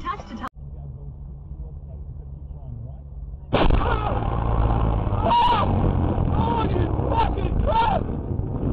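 Road and engine noise inside a moving car as picked up by a dash cam. It is a low, muffled rumble at first, then much louder and rougher from about three and a half seconds in, with several short rising-and-falling high calls over it.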